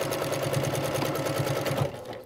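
Sewing machine stitching a seam along a zipper at a fast, even rate, then stopping shortly before the end.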